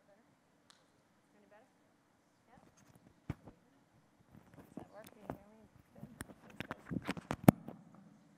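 Microphone handling noise while a lavalier or headset mic is swapped and fitted: sharp knocks and rubbing bumps that start about three seconds in and grow denser, the loudest knock near the end. Faint low speech runs underneath.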